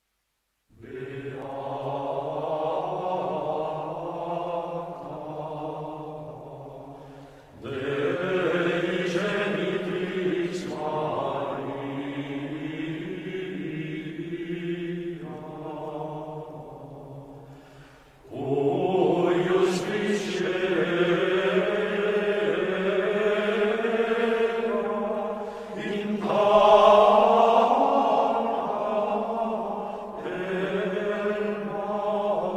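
Latin Gregorian chant responsory sung in unison by a choir of Benedictine monks, starting about a second in and moving in three long phrases with two brief breaths between them.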